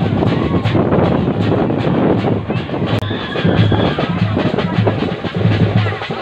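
Loud music driven by a pounding drum beat with a dense, clattering rhythm.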